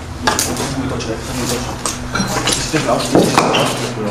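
A run of light, irregular clattering knocks from hard objects, with a steady low hum underneath.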